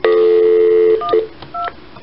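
Telephone dial tone for about a second, then two short touch-tone key beeps as a number is dialed.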